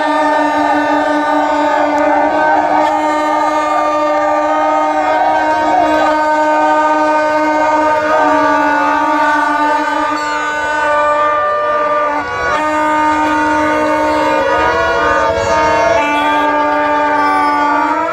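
Several plastic vuvuzela-style horns blown in long steady notes at different pitches, over a shouting crowd. The lowest horn breaks off briefly about twelve seconds in.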